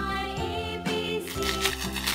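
Children's nursery-rhyme music playing, an instrumental stretch with held melody notes and no singing.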